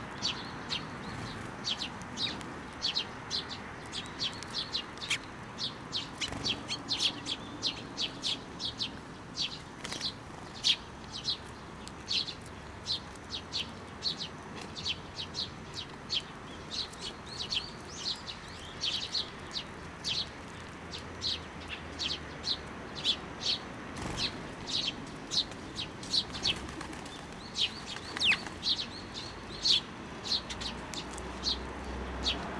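Eurasian tree sparrows feeding from a hand of millet, close up: a quick, steady run of short high chirps and clicks of beaks on seed, about two a second, with one falling chirp near the end.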